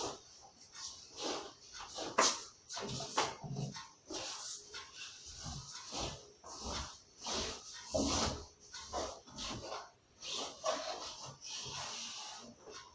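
A cloth swishing and rubbing as it dusts the bed and a wooden headboard: a string of short, irregular swishes with a few dull knocks.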